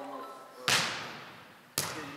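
A beach volleyball struck twice, about a second apart: two sharp slaps of the ball off hands and forearms, each leaving a long echo in a large hall.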